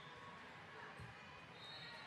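Faint gym ambience during a volleyball rally: distant voices in the hall and one dull thud of a ball about a second in.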